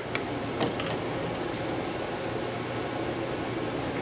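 Steady fan-like hum of a commercial kitchen, with a couple of faint clinks from metal skillets being handled about half a second in.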